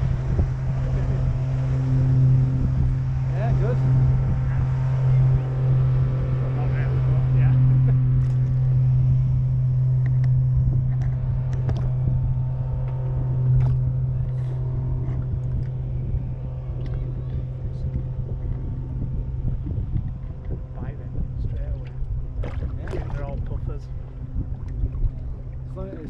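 A boat motor running with a steady low hum, easing off somewhat past the middle, with faint voices and a few light clicks and knocks in the second half.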